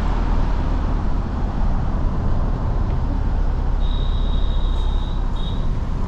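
A car driving on a road, heard from inside: a steady low rumble of tyre and wind noise. A faint high-pitched tone sounds for about a second and a half around four seconds in.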